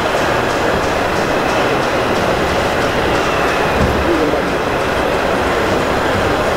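Steady, loud background din with indistinct voices mixed in.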